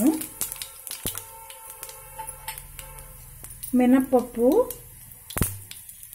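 Chana dal sizzling and crackling in hot oil in a frying pan, with scattered small pops, and two sharp knocks, about a second in and near the end.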